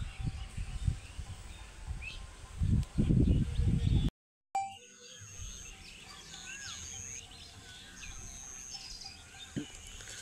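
Small birds chirping in short calls throughout, with heavy low rumbling noise on the microphone in the first four seconds. The sound cuts out briefly about four seconds in, after which the chirping continues more clearly over a faint, steady high-pitched tone.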